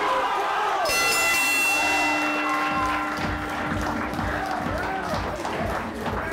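Boxing ring bell rung once about a second in, ringing out and fading over a few seconds, signalling the end of the round, over crowd voices and cheering.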